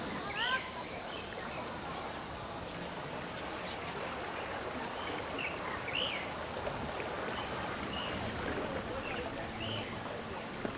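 Birds chirping in short calls, a few near the start and several more in the second half, over a steady outdoor background hiss.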